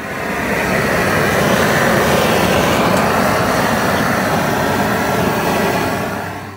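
A loud, steady rushing noise that swells in over about the first second and fades out near the end.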